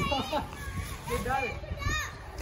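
Distant children's voices calling out a few times, over wind rumbling on the microphone.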